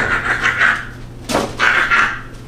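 A woman's breathy, voiceless laughter in two bursts, with a light knock at the start as a cardboard shoebox is handled.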